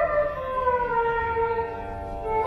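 Indian classical dance music: a flute holds one long note that slides slowly downward in pitch, played over loudspeakers.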